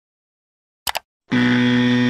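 Two quick clicks just before one second in, then a loud, steady electronic buzzing tone that holds for about a second: sound effects of an animated graphic.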